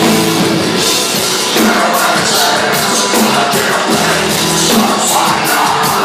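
Heavy metal band playing live at full volume: electric guitar and drum kit, with some singing.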